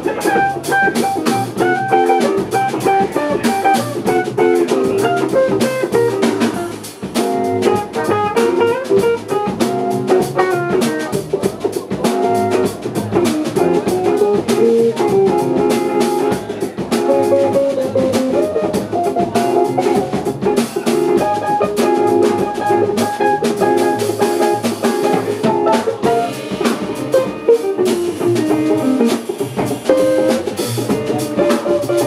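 A small band jamming live: electric guitars playing over a drum kit.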